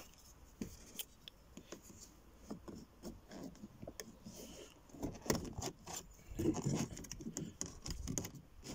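Plastic trim removal tool scraping and levering at the edge of a car door's power window switch panel, with scattered small clicks and scrapes of plastic on plastic as the panel's clips are worked loose.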